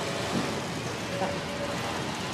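Steady noise of a textile workshop full of industrial sewing machines running.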